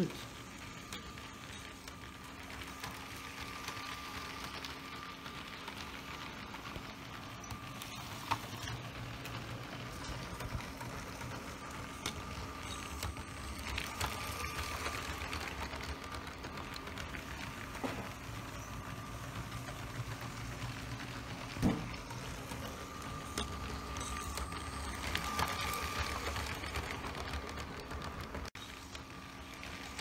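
LEGO Powered Up cargo train's small electric motor running steadily with a faint whine as the train circles on plastic track, with a few scattered clicks.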